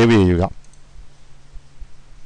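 A man drawing out a spoken word, then a faint single computer mouse click over a low steady hum.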